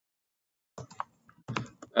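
Computer keyboard being typed on: a few separate keystrokes in the second half, after a silent start.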